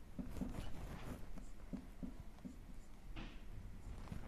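Marker pen writing on a whiteboard: a string of short, faint strokes as letters and symbols are drawn.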